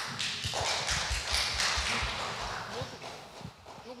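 Handling noise: a rustling hiss with soft, irregular low thumps that fades after about three seconds.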